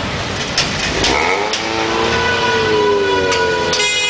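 Dense road traffic in a jammed intersection, a steady loud noise of idling and creeping engines. From about a second in, a pitched engine or horn-like tone slowly sags in pitch for a couple of seconds.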